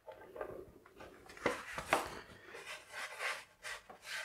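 Flour bag rustling as flour is shaken out into a metal flan tin to dust its base, heard as a series of soft, irregular scuffs and taps.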